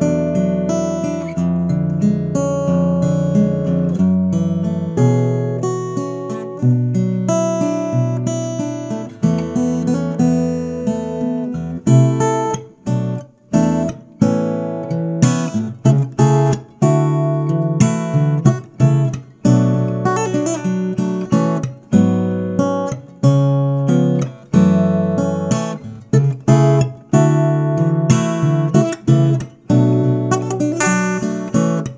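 Yamaha CSF-TA small-bodied acoustic guitar played solo. Full ringing chords come first, then from about twelve seconds in a quicker rhythm of sharp, clipped strokes with short breaks between phrases.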